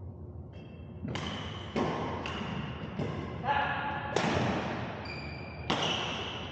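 Badminton rally: rackets striking the shuttlecock about seven times in quick succession. Each hit is sharp and rings out in the echo of a large gym hall.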